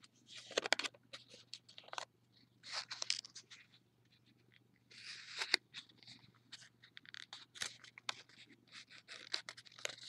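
Paper crinkling and rustling as fingers open a folded flap and squash it flat into a square, in many short light crackles with longer rustles about three and five seconds in.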